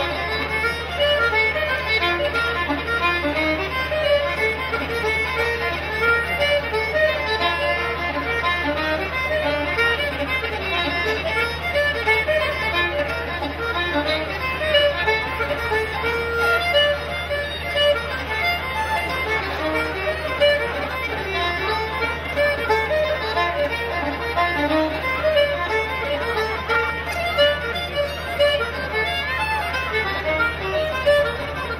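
Live Irish traditional music: fiddle and button accordion playing a tune together in quick, even notes, with acoustic guitar accompaniment.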